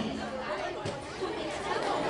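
Indistinct chatter of several people talking at once, low and jumbled, with no clear single voice.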